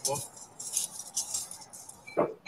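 A spoken word at the start, then a handful of light clinks and scrapes from a fencer's hand tools, scattered through the next two seconds.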